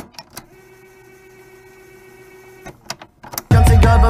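A hip-hop track has just cut off, leaving about three seconds of a faint steady hum with a few soft clicks. The next hip-hop beat then comes in loudly with a deep bass about three and a half seconds in.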